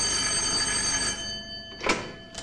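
A desk telephone's bell rings and the ring fades away, with a short clack near the end.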